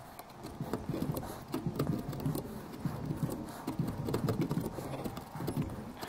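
Small hand gouge carving the centre out of a thin walnut piece: an irregular run of small clicks and scrapes as the steel edge cuts out chips.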